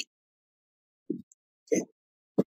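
Dead silence broken by two short, soft low plops about half a second apart, small sounds let through by a call app's noise suppression.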